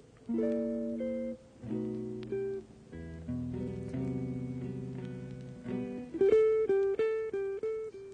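Background music: a guitar playing slow, ringing chords, then a louder, quicker run of picked notes from about six seconds in.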